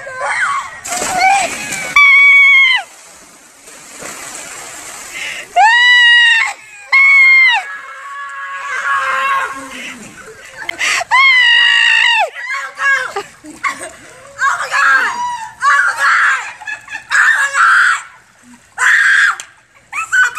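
Girls jumping into a cold swimming pool: a splash about a second in. Then loud, high-pitched screams repeat several times, each held for about a second, as they react to the cold water. Shorter shouts and laughter come in between.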